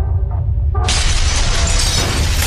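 Cinematic logo-reveal sound effect: a deep steady rumble, then a sudden loud crash of shattering stone and debris less than a second in that keeps going.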